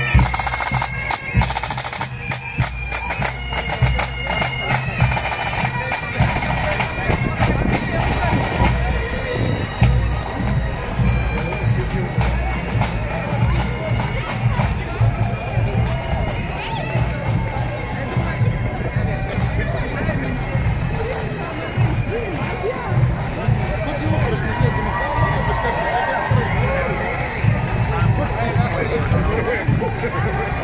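Pipe band passing: bagpipes and snare and bass drums playing for about the first nine seconds. After that the band fades and a roadside crowd's talking and calling take over.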